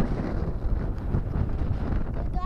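Wind blowing across the camera's microphone, a steady low rush.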